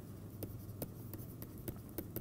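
Stylus writing on a tablet screen: faint, scattered taps and scratches, a handful of sharp clicks, over a low steady hum.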